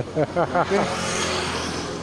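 A road vehicle passing, a swelling and fading rush of noise about a second in, after a man's voice at the start.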